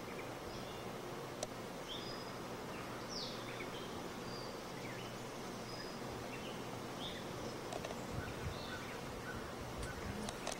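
Outdoor ambience at the beehives: a steady hiss with a faint low hum of honeybees, and short bird chirps scattered throughout.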